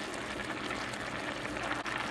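Steady hiss of vegetables simmering in their liquid in a pan while a spoon stirs them.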